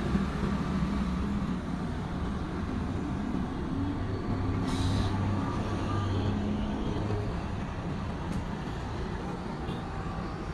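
Road traffic on a nearby bridge: a steady low rumble of passing vehicles, with a brief hiss about five seconds in.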